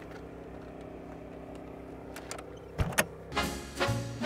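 Small Champion portable generator humming steadily as it powers the truck camper's rooftop air conditioner. Two sharp knocks come just before three seconds in, then brass swing music starts.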